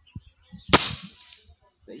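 A single shot from a scoped air rifle: one sharp crack about three-quarters of a second in, with a brief ring-out after it.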